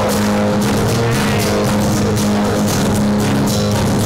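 Acoustic-electric guitar strummed in a steady rhythm through a PA, an instrumental stretch of a country song with no singing.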